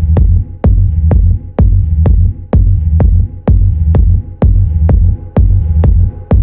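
Techno track with a steady four-on-the-floor kick drum at about two beats a second over a heavy rumbling bassline, with a faint held drone above.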